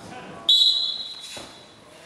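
Referee's whistle blown once, starting about half a second in: a single shrill blast lasting about a second that fades away. It signals the start of wrestling from the referee's position.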